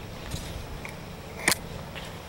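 Hoofbeats of a horse cantering on grass, heard faintly over steady outdoor background noise. A sharp click about one and a half seconds in is the loudest sound.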